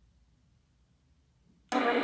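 Homemade regenerative airband radio receiver, near silent between transmissions, then near the end it opens abruptly onto an incoming air-traffic radio transmission with a sudden burst of loud radio hiss.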